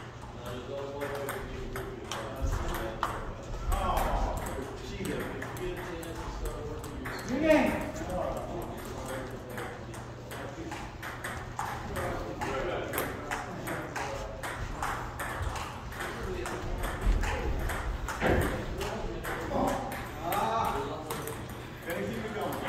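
Table tennis balls clicking on paddles and the table in rallies, many short, sharp taps scattered throughout, with people talking in the background.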